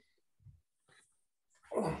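A man's hummed, thinking "hmm" near the end, its pitch sliding downward, after a second or so of faint low throat sounds.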